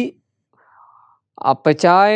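A man's voice reading aloud in Sinhala breaks off just after the start, then resumes after a pause of about a second. The pause holds only a faint, soft noise.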